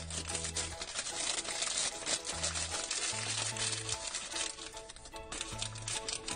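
Thin plastic wrapper crinkling as hands pull a small toy figure out of it, over background music with a slow bass line.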